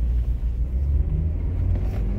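Low, steady rumble of a car heard from inside the cabin.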